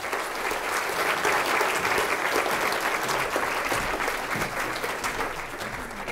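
Audience in a lecture hall applauding: dense clapping that swells in the first second, holds steady, then tapers off near the end.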